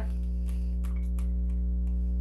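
A steady low hum under a few faint light clicks of a deck of oracle cards being shuffled by hand.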